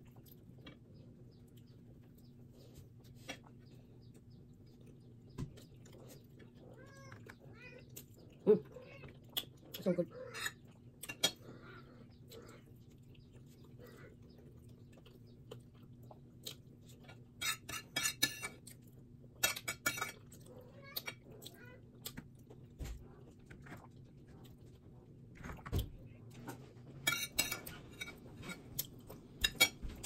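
A person eating a KFC meal close to the microphone: quiet chewing and small clicks, with several bursts of crisp crackling in the second half, over a steady low hum.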